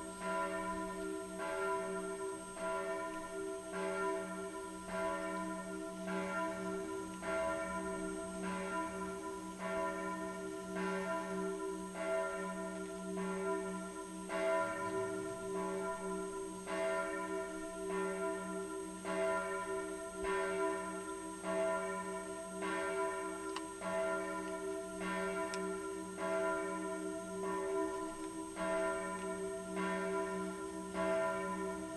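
Church bells ringing, with a fresh stroke about once a second over long, overlapping ringing tones.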